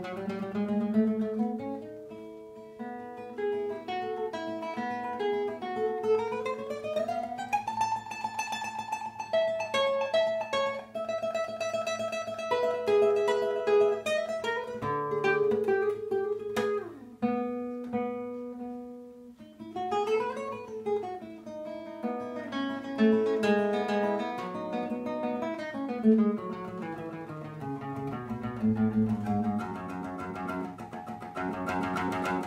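Classical nylon-string guitar played solo, fingerstyle: quick runs and arpeggios rising and falling over a bass line, with some notes held and ringing.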